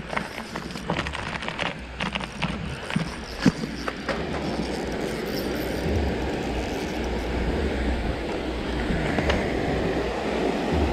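Footsteps and rustling through grass, with sharp clicks and knocks, over the first few seconds, then the steady rush of fast-flowing river water taking over from about four seconds in.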